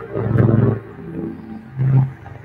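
Live electronic music from laptops and hardware: a low, rough-textured pitched drone that swells loudly twice, about half a second in and again near the end.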